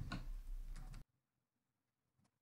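A few faint computer keyboard keystrokes over low room hiss, with all sound cutting out to dead silence about a second in.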